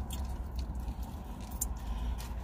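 Steady low hum of a car idling, heard inside the cabin, with a few faint crinkles and clicks as food bags and packets are rummaged through.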